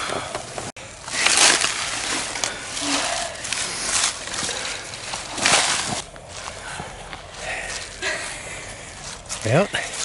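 Footsteps crunching through dry leaf litter and brushing through twigs and saplings, in irregular bursts. A voice is heard briefly near the end.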